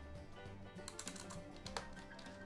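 A few quick keystrokes on a computer keyboard, in a short cluster about a second in and one more near the end, over faint background music.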